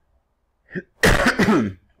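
A man coughs once to clear his throat, a short rough cough about a second in, after a moment of quiet.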